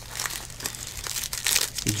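Foil wrapper of a baseball trading-card pack crinkling as it is pulled open by hand, a run of irregular crackles.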